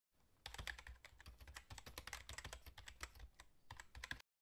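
Faint, rapid clicking of a typing sound effect, starting about half a second in: keystrokes laid over on-screen text that appears letter by letter.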